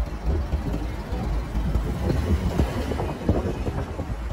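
Steady low rumble of wind buffeting the microphone, mixed with the road noise of a moving vehicle and street traffic.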